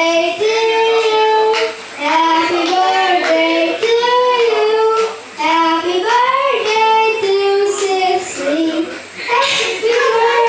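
A young boy singing into a handheld microphone: long held notes that glide up and down in pitch, in phrases with short breaths between them.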